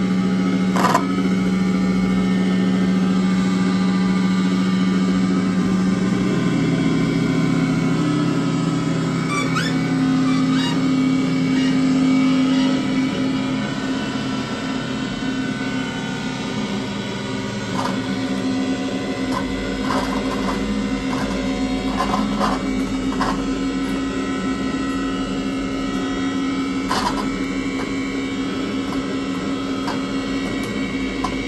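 Live experimental electronic noise from keyboards and effects pedals: layered low droning tones that shift in pitch about six and thirteen seconds in, with scattered clicks in the second half.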